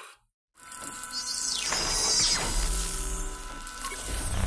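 Electronic logo sting: about half a second in, a hissing synthetic swell builds up with a low steady drone, and a pitch sweep falls from high to low around the middle.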